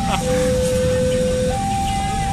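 Railway level-crossing warning alarm sounding: a steady electronic tone that switches between a lower and a higher pitch about every second and a quarter, signalling an approaching train, over a low rumble of waiting traffic.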